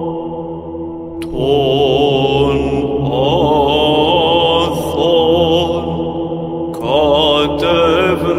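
Orthodox church chant: voices singing a slow, wavering melody over a steady held drone. Phrases break off and start again about a second in and near the seven-second mark.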